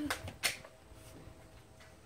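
Two short sharp clicks near the start, about a third of a second apart, the second the louder, then only faint background.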